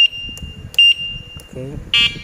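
Electric bicycle's turn-signal beeper sounding while the indicator flashes: a high, steady electronic tone that restarts with a sharp, louder beep about every second. Right at the end a louder, harsher tone cuts in.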